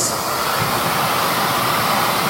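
A steady, high-pitched hiss of noise that cuts in suddenly.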